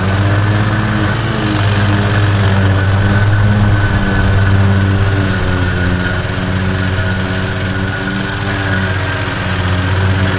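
Riding lawn mower's small engine running steadily while the mower drives through snow, its pitch wavering slightly, with a thin steady high whine above it.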